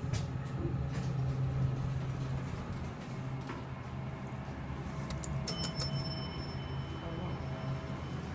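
Elevator arrival chime: a single bell-like ding about five and a half seconds in that rings out over a couple of seconds, over a steady low hum.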